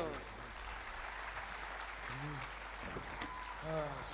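Theatre audience applauding steadily as a scene ends, with a couple of faint spoken words under it.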